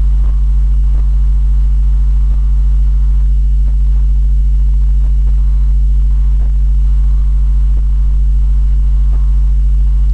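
Loud, steady electrical mains hum on the recording, a low buzz with steady overtones that does not change, with a few faint clicks.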